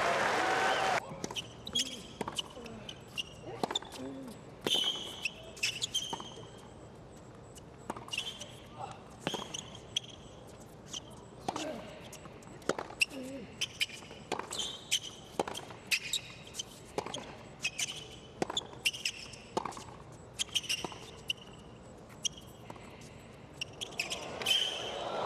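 Tennis rally on a hard court: repeated sharp racket strikes on the ball and ball bounces, with short sneaker squeaks on the court surface. Loud crowd applause at the start cuts off about a second in.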